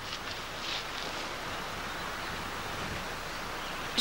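Steady low hiss of outdoor ambience, with no distinct event standing out.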